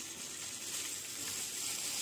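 Sugar pouring from a plastic bag into milk in a mixer-grinder jar: a soft, steady hiss.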